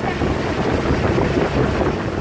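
Outrigger boat underway at sea: a steady, loud rumble with wind buffeting the microphone.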